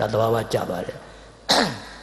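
A man's voice speaking Burmese into a microphone during a sermon: a short phrase, a pause, then a sharp breathy sound about a second and a half in.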